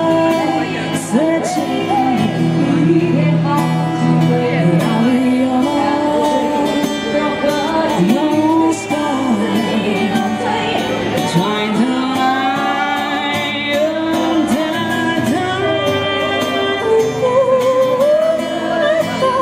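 A woman singing a slow pop ballad into a microphone, accompanied by a man playing acoustic guitar.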